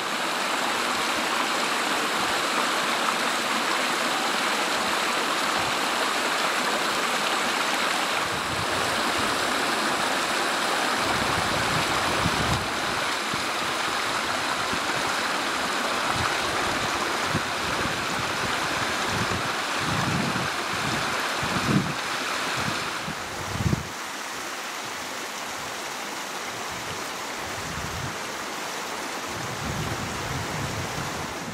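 Small alpine mountain stream rushing and splashing over rocks and boulders in a steady wash of water, a little quieter over the last few seconds.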